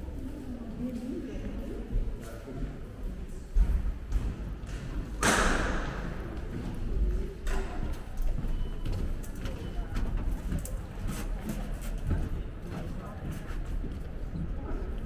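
Indistinct voices of people around the walker, with scattered thuds and knocks over a low rumble. About five seconds in there is a short, loud rush of noise.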